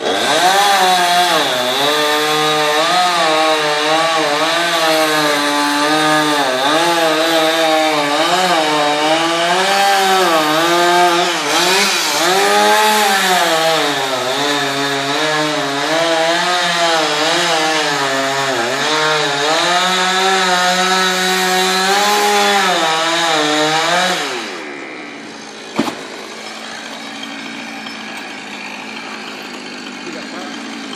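Two-stroke chainsaw at high revs cutting into a palm trunk, its engine note dipping and rising as the chain loads up and clears. About 24 seconds in, the revs fall away to a quieter run, with a single sharp knock a couple of seconds later.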